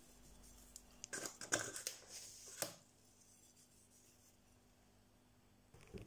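A few short rustles and scrapes of hands salting raw fish pieces on a plate during the first three seconds, then the sound drops out to silence.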